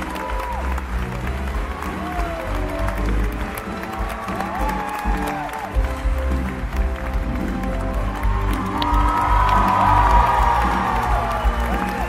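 Live theatre band music with a steady bass pulse, under audience applause and cheering, with whoops rising and falling; the cheering swells near the end.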